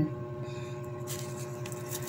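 Steady low background hum, with faint rustling of paper and dry garlic skin being handled from about a second in.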